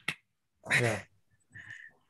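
Speech only: a man says a short 'yeah' over a video-call link, with a brief sharp click just before it.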